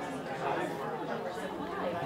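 Overlapping chatter of several adults talking at once in pairs across a room, with no single voice standing out.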